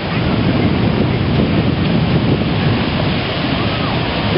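Wind buffeting the microphone over the steady wash of ocean surf breaking on the beach.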